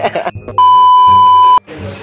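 An edited-in censor-style bleep: a single steady, high beep tone lasting about a second, starting and cutting off abruptly.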